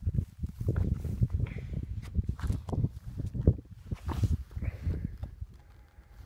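Boots scuffing and knocking on gritstone boulders while scrambling down a steep rocky stream bed: irregular steps, a few a second, with rustle and bumps close to the microphone.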